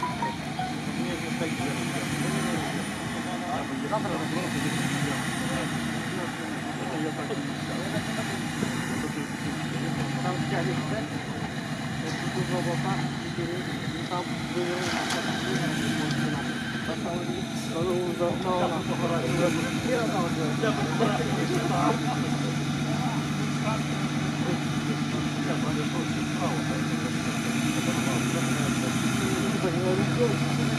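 Nissan Patrol Y61 engine running steadily at low revs as the SUV crawls through a deep, water-filled swamp crossing, with people talking over it.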